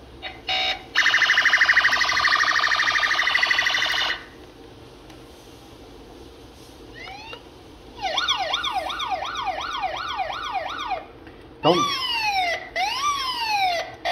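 Electronic siren sounds from a toy fire-rescue car's sound module as its button steps through the patterns. First comes a fast pulsing warble, then after a pause a quick wail sweeping up and down about three times a second, then a slower wail with long falling sweeps near the end.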